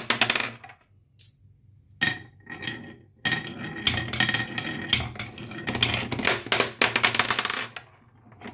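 Glass marbles rolling and rattling along a wooden marble run and circling a wooden funnel bowl, a dense stream of small clicks. The rolling stops briefly about a second in, starts again at about two seconds and runs on until just before the end.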